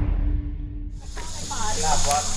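The low tail of a fire-burst sound effect dies away over the first second, then a steady high-pitched insect drone comes in, with people talking in the background.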